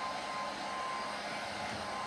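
Handheld heat gun running steadily, its fan giving an even rush of air with a faint whine, as it is played over a tambourine's skin head to shrink and tighten it.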